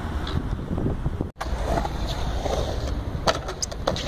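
Skateboard wheels rolling on a concrete ramp, a steady low rumble, with a few sharp clacks of the board near the end. The sound drops out briefly about a second in.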